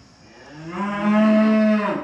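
A cow mooing: one long call that swells in about half a second in, holds steady and loud, and stops near the end.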